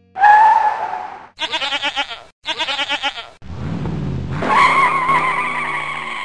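A goat bleating three times, each call wavering and trembling, followed by a car engine revving up and a long tyre squeal.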